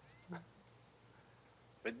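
A pause of near silence with one brief faint sound about a third of a second in, then a man's voice begins near the end.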